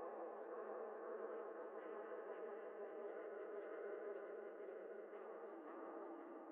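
Faint, steady drone of many held tones with nothing in the deep bass or the high treble, giving it a thin, muffled sound, in a song's outro.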